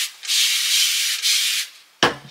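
A hand-held spray bottle misting water onto curly hair: one steady hiss of about a second and a half.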